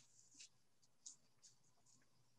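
Near silence, with four or five faint, short scratchy ticks and rustles, such as small desk-handling noises picked up by a computer microphone.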